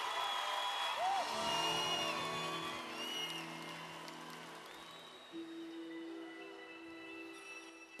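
Concert audience cheering and whistling, dying away over the first few seconds. Under it a soft chord of held notes comes in, thinning to one steady note about five seconds in.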